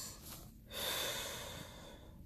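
A person breathing close to the microphone: one breath trails off at the start, and another is drawn just under a second in and fades over about a second.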